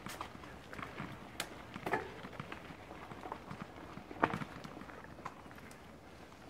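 Mountain bike rolling along a dirt trail: a low, even rolling noise with scattered irregular clicks and knocks as the bike goes over bumps, the sharpest about four seconds in.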